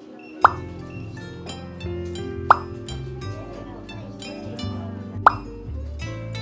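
Light plucked-string background music, with three short rising bubble-pop sound effects about two to three seconds apart.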